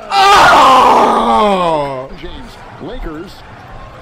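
A man's loud, drawn-out yell of dismay, one long voice falling steadily in pitch for about two seconds before it breaks off.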